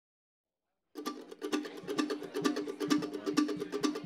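A single acoustic string instrument, picked, starts a fast bluegrass intro about a second in: an even run of quick picked notes, about six or seven a second, played alone before the band comes in.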